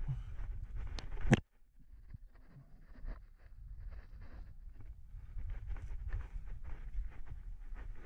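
Faint outdoor sound of rock climbing: a low rumble with soft scuffs and taps of a climber's hands and shoes on rock. A sharp click comes a little over a second in, and the sound then drops out briefly before the scuffing resumes.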